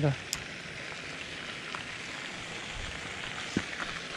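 Steady, even outdoor hiss with a few faint, short clicks.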